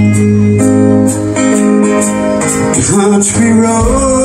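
A live rock band playing with a full band sound: acoustic and electric guitars, bass and drums, with a steady beat of cymbal strikes. A note slides up and down a little before three seconds in.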